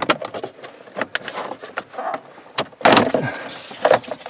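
Plastic dashboard trim, the AC control bezel of a Toyota Corolla, being yanked out of the dash: a run of clicks and knocks, with a louder crack about three seconds in as the panel pops free of its clips.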